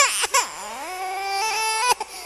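A baby-like crying wail: a couple of quick falling cries, then one long cry whose pitch climbs in steps and cuts off suddenly near the end.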